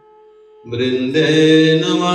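A man chanting Sanskrit invocation prayers to a sung melody. A faint held note trails off, then a new chanted line begins about two-thirds of a second in.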